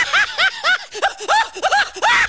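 High-pitched laughing sound effect: a rapid run of short "ha" notes, about five a second, each rising and falling in pitch.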